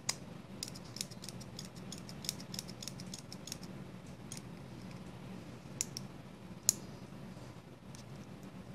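Light, irregular clicks and taps of a needle-tip oil applicator and fingers against a small folding knife as oil is worked into its pivot. The clicks come in a quick run over the first few seconds, then a few spaced ones.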